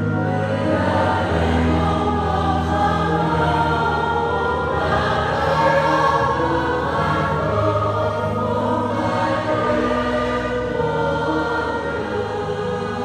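Mixed choir of men and women singing a Vietnamese Catholic funeral hymn in parts, with long held low notes underneath and steady loudness.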